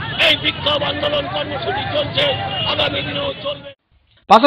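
A man shouting over a crowd, with several other voices shouting at once in a noisy babble. It cuts off abruptly shortly before the end.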